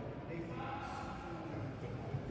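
Indistinct voices of people talking at a distance, echoing in a large domed stone hall.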